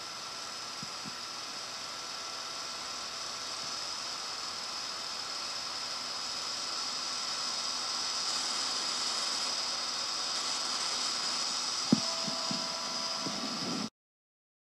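A small machine running steadily under tape hiss, slowly growing louder. A single sharp click comes about twelve seconds in, followed by a few soft knocks, and the sound cuts off suddenly at the end.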